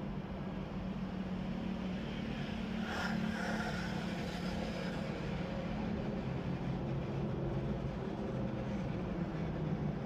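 A motor running steadily in a low, even hum, with a brief sharper noise about three seconds in.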